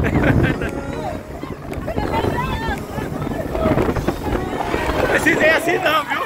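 Wind rushing over the microphone aboard a speedboat under way, with the boat's steady low rumble and passengers' voices and laughter rising over it twice.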